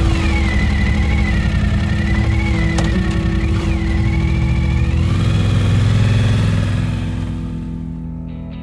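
Suzuki V-Strom 1000's V-twin engine running and revving over background music, its pitch wavering and then rising about five seconds in before fading near the end.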